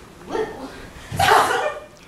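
Two short, loud wordless vocal cries from a person, the second and louder one about a second in.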